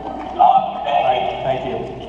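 Indistinct speech, too unclear for the recogniser to write down.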